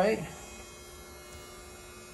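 A faint, steady electrical hum, following the tail of a spoken word at the start.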